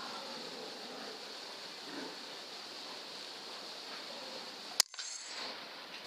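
A single sharp shot from a .22 PCP air rifle about five seconds in, over a faint steady hiss.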